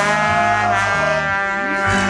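Live band music: a brass horn holds a long note over guitar accompaniment.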